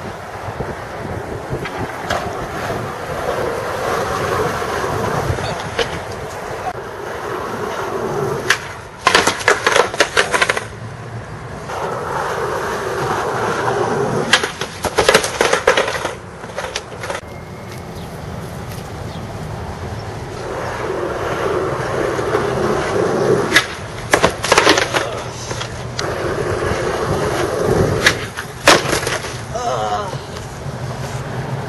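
Skateboard wheels rolling on asphalt in several passes, each swelling and fading. Clusters of sharp clacks break them up four times as the boards slap and clatter on the pavement, with riders falling and boards rolling away.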